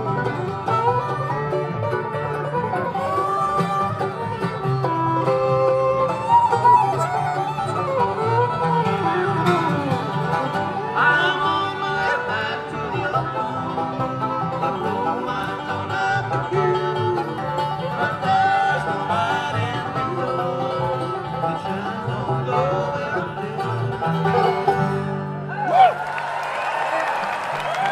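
Acoustic bluegrass band playing an instrumental passage on fiddle, mandolin, acoustic guitar and upright bass, with sliding fiddle lines; the tune ends on a final accented note near the end.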